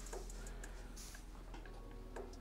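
Faint ticks and a brief scratch of a black felt-tip marker tip on paper as short lines are drawn.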